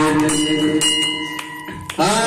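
Hanging brass temple bells struck several times, each strike followed by a long ringing tone, over devotional music that fades during the second half.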